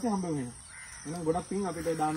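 A voice chanting in long, sing-song phrases: a held note falls away in the first half-second, and more drawn-out phrases follow from about a second in.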